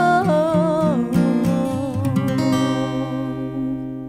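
A female voice finishes a held, wavering sung note about a second in, over acoustic guitar. The guitar then plays a few last notes and a final chord that rings out and fades.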